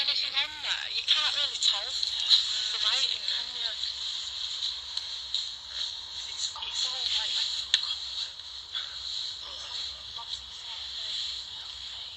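Olympus VN-711PC digital voice recorder playing back a recording through its small built-in speaker: faint, tinny voices over a steady high hiss.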